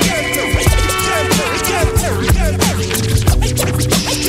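Instrumental hip hop beat with turntable scratching: quick back-and-forth record scratches cut over a looping beat, with no rapping.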